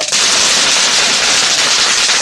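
A small firework burning with a loud, dense fizzing and crackling as it sprays sparks.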